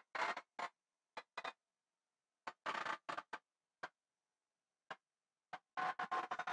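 Near silence broken by about a dozen faint, short ticks and snippets of noise, each cut off abruptly into dead silence. Some come singly and some in quick clusters, the busiest stretch being about two and a half to three and a half seconds in.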